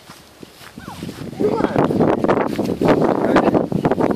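Footsteps through long grass with rustling and knocks close to the microphone, starting about a second and a half in and running loud and irregular.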